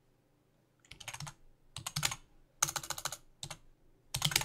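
Computer keyboard typing in four quick runs of keystrokes, starting about a second in, as a short phrase is typed word by word.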